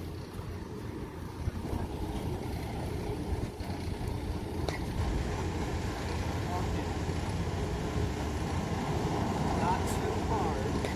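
Steady low outdoor background rumble, of the kind nearby road traffic or wind makes, with faint voices in the distance and a single faint click near the middle.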